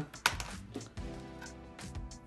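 Soft background music with a few light clicks and taps from a small USB tester and its cable being handled over a laptop motherboard.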